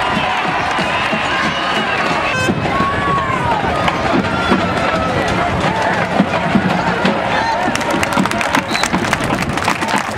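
Football stadium crowd: many spectators talking, shouting and cheering at once, with a quick patter of sharp clicks near the end.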